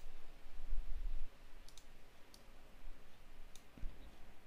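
Computer mouse clicking a few times: a quick pair of clicks a little before the middle, then single clicks, over a low rumble during the first second.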